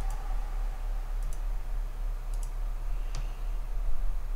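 Computer mouse clicks: a single click, two quick double clicks about a second apart, then another single click, over a steady low hum.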